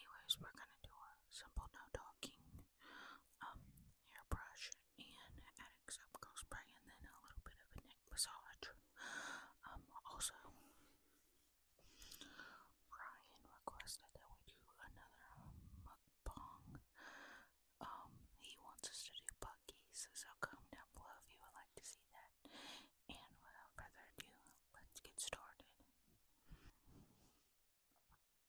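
A woman whispering close into a microphone in short, breathy phrases, with soft mouth clicks between them and a brief pause about halfway through.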